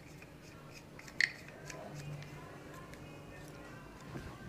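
Quiet clicks and rubbing as a RAM Mount socket arm is handled and clamped onto its ball, with one sharper click about a second in.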